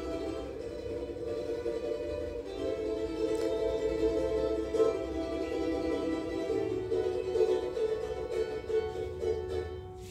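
A small ensemble playing a slow passage of held, sustained chords that shift a few times and die away near the end.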